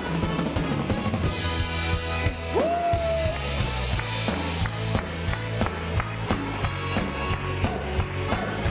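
A pop-rock band's song in an instrumental passage: drum kit keeping a steady beat over bass and guitar. A single note slides up and holds about two and a half seconds in.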